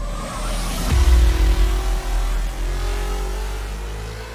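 Channel-logo sting sound effect: a rising whoosh that lands on a deep boom about a second in, followed by a held drone whose tone slowly rises as it fades.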